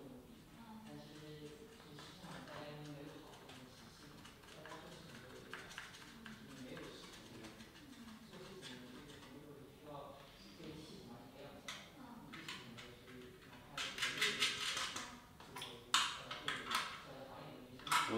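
Bolt and nut being handled and screwed into a 3D-printed plastic board. Quiet handling noise, then a cluster of sharp clicks and rattles of small metal hardware near the end.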